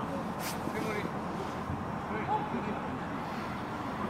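Faint voices of football players calling out across the pitch, over steady outdoor background noise.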